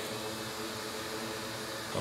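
Steady fan noise: an even hiss with a faint hum underneath.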